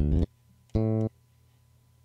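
Fat Fingers sampled bass patch in the PreSonus Presence instrument, auditioned from the on-screen piano keys: a held note cuts off just after the start, then one short bass note sounds about a second in. The user finds this patch out of tune.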